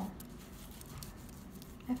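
Faint scraping and rubbing as a gritty rice-powder paste is scooped up and spread over skin, with a few soft scratches in the first half second.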